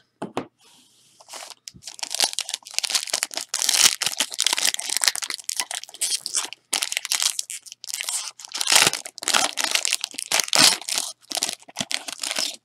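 A foil trading-card pack wrapper being torn open and crinkled by hand: a dense run of crackling and tearing that starts about a second in and goes on, with brief pauses, almost to the end.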